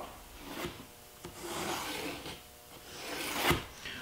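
Pencil scratching along a straightedge across a zebrawood board, in a few soft strokes, with one light knock near the end.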